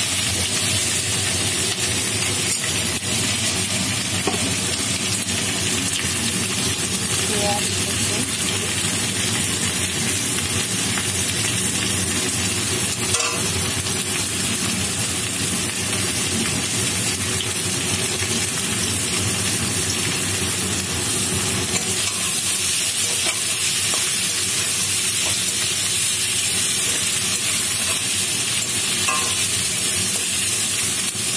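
Potato wedges frying in hot oil in a metal kadai, sizzling steadily, with a metal spatula scraping and turning them around the pan at times. One sharper knock comes about 13 seconds in.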